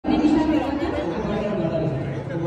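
Chatter: several voices talking over one another.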